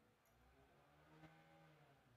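Near silence: faint room tone, with one faint click about a second in.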